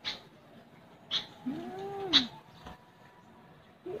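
Eurasian tree sparrow (maya) giving three short, sharp chirps about a second apart. Between the second and third chirp comes a low call that rises and falls, lasting under a second.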